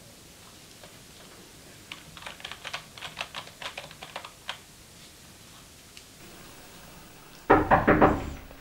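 Typing on a computer keyboard: a quick run of key clicks starting about two seconds in and lasting a couple of seconds. Near the end, three loud knocks on a door.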